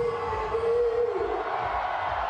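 Live electronic concert: a crowd shouting along in long held calls over a thumping electronic beat, giving way about a second in to a wash of crowd noise.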